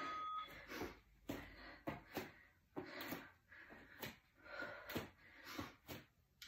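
A woman's quick, effortful breathing, faint puffs about two a second, as she holds a plank and taps her shoulders.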